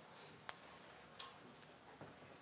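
Near silence: room tone, broken by a sharp click about half a second in and a softer click a little after a second.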